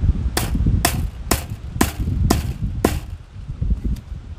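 Hammer striking a bent wire handle laid on a wooden stump, six sharp blows about half a second apart, then stopping: the wire bend is being hammered down flat.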